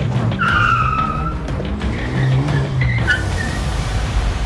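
Car pulling away with a brief tire squeal, a falling high-pitched screech about half a second in, over a steady low engine sound.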